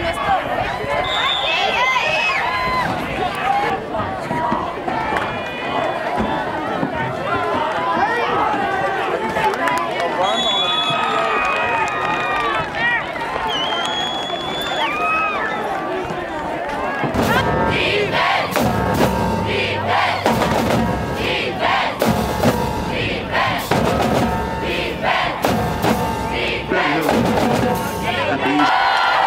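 Crowd noise from the stands with shouts and cheers. About two-thirds of the way in, a high-school marching band drumline starts up, playing a loud, rhythmic beat of snare, bass drum and crashing cymbals.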